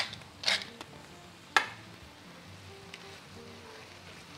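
Pan sauce of mushrooms faintly simmering and sizzling in a cast-iron skillet, with a brief noisy rasp about half a second in and one sharp click about a second and a half in. Faint background music runs underneath.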